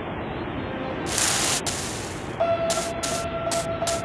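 Soundtrack of an animated cartoon: quiet background music, a whooshing swell a little after a second in, then a held tone with a few short hissing swishes near the end.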